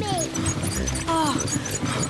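Cartoon background music with steady sustained tones, and a brief falling vocal sound about a second in.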